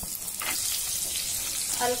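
Chopped onion sizzling as it fries in hot oil and butter in a nonstick pan, stirred with a wooden spatula, a steady hiss.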